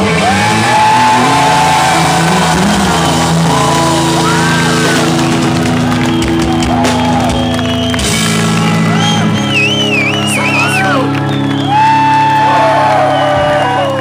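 Rock band playing live, with long held chords, and the crowd shouting and whooping over it.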